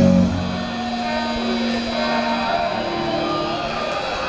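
Live heavy metal band ending a song: the full band stops a fraction of a second in, leaving electric guitar notes ringing out as long held tones.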